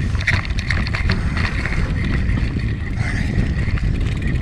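Mountain bike ridden on a dirt trail: wind rumbling on the handlebar-mounted camera's microphone, with quick irregular clicks and rattles from the bike over the ground.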